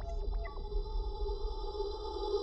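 Electronic logo sting: a few short synthetic blips that glide down in pitch in the first half second, giving way to a steady held synth drone.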